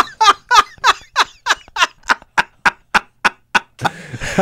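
Men laughing hard at a joke: a long run of short, even "ha-ha" bursts, about three to four a second, that turn shorter and breathier toward the end.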